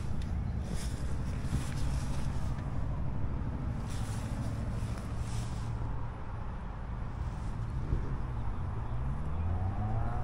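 Idling V8 engine, a steady low rumble from its exhaust, with its pitch rising briefly near the end.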